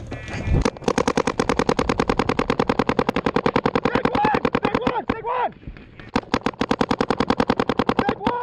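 Paintball markers firing in rapid, even strings of about ten shots a second, with a short break about six seconds in. Shouts from players are heard over the shooting around four to five seconds in.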